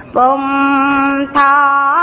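A single voice chanting in Buddhist style, holding long, level notes. The first note lasts about a second; after a brief break a second note begins and bends upward near the end.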